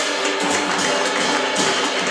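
Live jazz from piano, double bass and drum kit playing together, with cymbal strokes running through.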